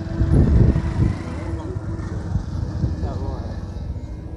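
Motorcycle engine running at low speed, heard from the bike itself, with a louder low rumble in the first second.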